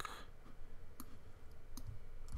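A few isolated clicks of a computer mouse, one about a second in and another near the end, over faint room tone.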